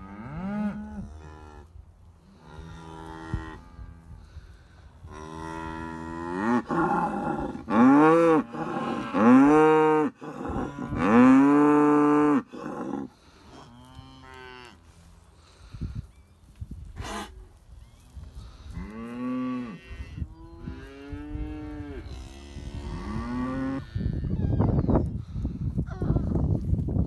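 Beef cows in a herd mooing again and again, long drawn-out moos that overlap. The loudest are close by, in the middle of the stretch.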